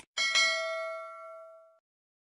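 A short click, then a notification-bell 'ding' sound effect of the subscribe animation, struck twice in quick succession and ringing out, fading over about a second and a half.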